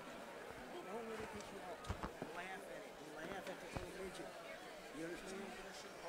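Indistinct, low-level talking among several people away from the microphone, with a few sharp knocks or taps around the middle.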